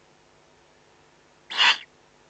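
Eurasian eagle owl giving a single short, hoarse hissing call, loud against the quiet nest background, about one and a half seconds in.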